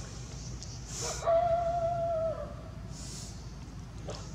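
A macaque giving one long, steady call lasting about a second, starting just over a second in.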